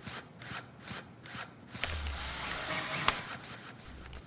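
Small mechanical clicks in a quick series, about three a second, then a longer soft whirring hiss over a low hum that ends in a sharp click. These are mechanism sound effects of a miniature toy-sized humanoid robot's joints and gears moving as it walks and is folded up.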